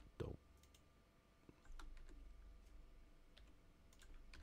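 Faint, scattered clicks of a computer mouse and keyboard, with a low hum coming in about two seconds in.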